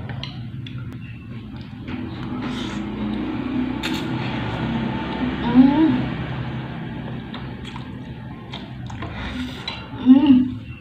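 A person slurping spaghetti noodles off a fork, the slurp building over a few seconds, with one sharp clink of cutlery on a glass plate about four seconds in and a short hum of the voice just after.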